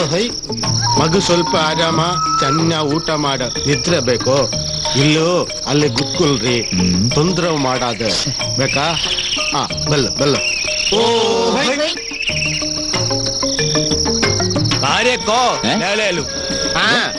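Crickets chirping in a steady high drone of night ambience, with people talking over it.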